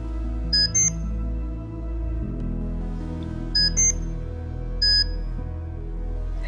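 Short electronic beeps from the RemunityPRO infusion pump system as priming is stopped: a quick double beep, another double beep about three seconds later, then a single longer beep, over soft background music.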